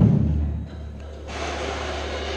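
Drums from the percussion ensemble die away in the first half second, leaving a quieter lull with a low steady hum.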